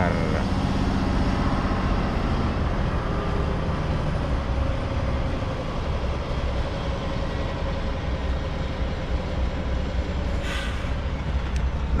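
Semi-truck's diesel engine running at low speed, heard from inside the cab while it manoeuvres, a steady low rumble. About ten seconds in there is a short hiss, and a click near the end.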